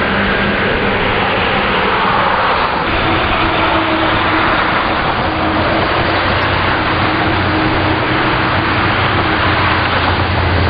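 Steady road-traffic noise: a continuous rush with a low engine hum underneath.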